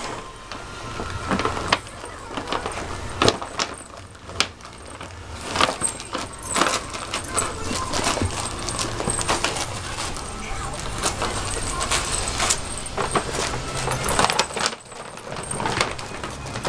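Paper gift bag and tissue paper rustling and crinkling in quick irregular bursts as dogs root through it with their heads, busiest in the middle stretch, with light metallic jingling mixed in.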